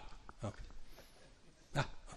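A man's short hesitant vocal sounds, 'uh... uh', two brief grunts with pauses between.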